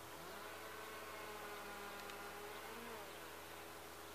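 Faint, distant buzzing whine of an electric RC model plane's motor and propeller. It rises in pitch as the throttle opens shortly after the start for a climb, holds, then drops back a little before three seconds in.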